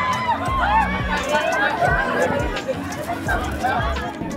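A crowd of people excitedly calling and shouting over one another, many voices at once.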